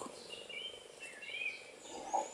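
Faint birdsong: several short chirps and warbles in the first second or so, and a higher chirp near the end, over a low steady hiss.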